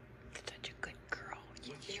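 A voice speaking softly, close to a whisper, in short hissy strokes, then ordinary speech beginning near the end.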